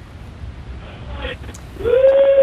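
A steady low rumble under faint voices; near the end a person's voice rises into a long, held cry.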